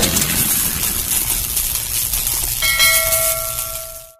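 Intro-animation sound effects: a loud rushing hiss over a low rumble, the tail of a boom, and a bell-like chime of several tones that comes in about two-thirds of the way through and holds as the noise fades near the end.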